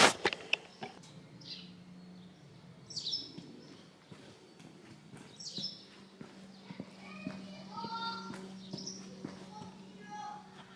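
Quiet outdoor ambience: short falling bird chirps come three times over a steady low hum, with a few sharp clicks at the very start.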